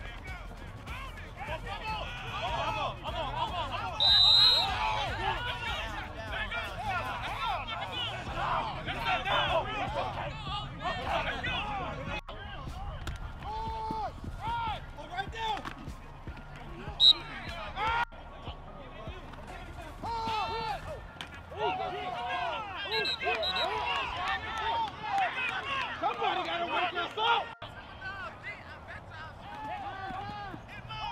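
Indistinct shouting from several voices over a football play, with a short high whistle blast about four seconds in and a brief sharp crack about seventeen seconds in.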